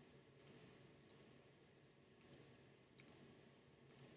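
Faint computer mouse clicks: about five bouts, several of them quick double clicks, spread over a few seconds with light room hiss between them.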